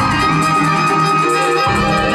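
Live instrumental music: sustained violin lines, layered by live looping, over low bass notes that change about a second and a half in.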